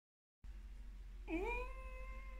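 A woman's voice humming with closed lips behind a hand over her mouth: one long held note that starts a bit past halfway with a short dip and rise in pitch.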